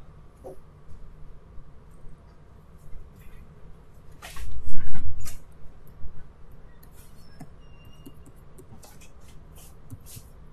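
Computer keyboard keys clicking here and there as configuration commands are typed. A brief low rumbling thud about four seconds in, lasting about a second, is the loudest sound.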